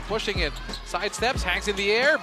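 Basketball game broadcast audio: a play-by-play commentator's voice calling the action over the game sound, with background music underneath.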